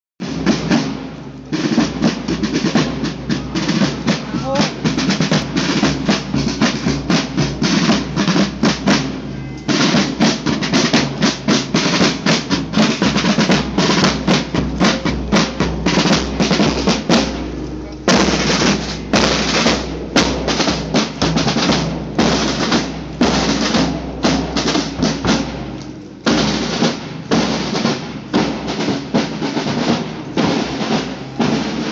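Marching band's snare drums and bass drums playing a marching cadence, in phrases with short breaks between them.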